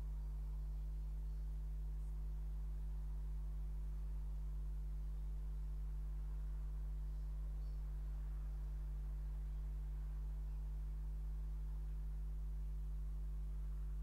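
Steady low electrical hum under quiet room tone, with nothing else happening.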